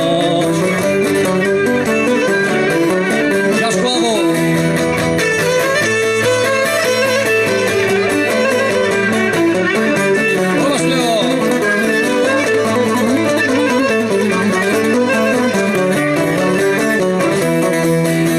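Cretan lyra, a bowed three-string fiddle, playing a fast, ornamented melody over plucked string accompaniment: live Cretan folk dance music.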